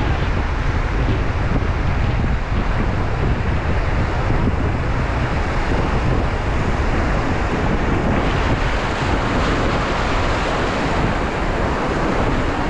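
Fast river water rushing around an inflatable raft, with wind buffeting the microphone: a loud, steady rush with a deep rumble that turns hissier about eight seconds in.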